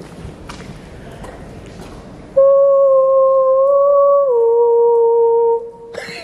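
A person's voice holding one long, steady 'ooo' note, starting suddenly about two seconds in and stepping down to a lower note partway through, then breaking off with a short echo in the tunnel. Before it there is only faint tunnel background noise.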